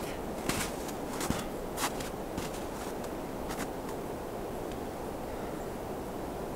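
A few footsteps in snow, several in the first two seconds and one more a little past the middle, over a steady outdoor hiss.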